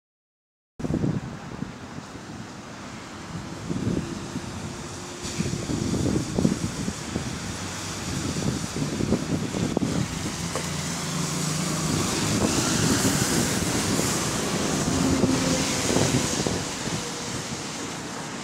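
A Volvo B5LH hybrid double-decker bus driving past close by on a wet road, its engine and tyres rising over steady street traffic noise and loudest as it draws alongside midway.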